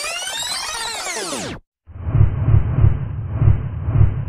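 Editing sound effects: a bright sweep of many overlapping gliding tones that cuts off abruptly about a second and a half in, then, after a short gap, a low rumbling effect with heavy beats about twice a second.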